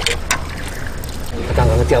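Water splashing and sloshing as a hooked fish thrashes in a landing net being lifted from a pond, with a few sharp clicks right at the start. A voice speaks near the end.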